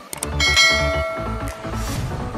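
A bell-like notification chime from a subscribe-button animation rings out about half a second in and fades over about a second, over electronic music.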